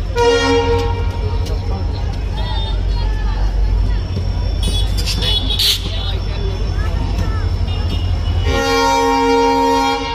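Diesel locomotive horn sounding a short blast at the start and a long blast from near the end as the locomotive pulls its train into the station, over a steady low rumble. A brief hiss comes about five seconds in.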